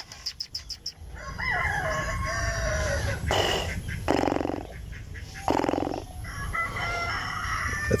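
A man imitating animal calls with his voice: a few quick clicks at the start, then drawn-out wavering calls, with three short harsh bursts in the middle.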